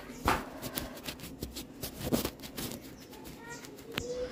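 Quiet, irregular light clicks and rustles of handling and movement as the camera is carried through a small tiled room, with a faint short chirp about three and a half seconds in.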